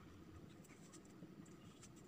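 Faint scratches and taps of a marker pen writing on a whiteboard, a few short strokes, over a low steady room hum.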